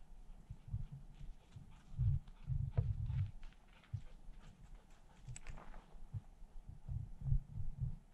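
Irregular low rumbling thumps on the camera microphone, heaviest a couple of seconds in and again near the end, with a few faint clicks.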